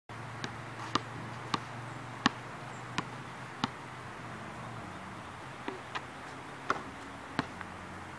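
Basketball dribbled on an outdoor asphalt court: sharp single bounces about every two-thirds of a second for the first four seconds, a pause, then a few more, lighter bounces in the second half. A faint steady low hum runs underneath.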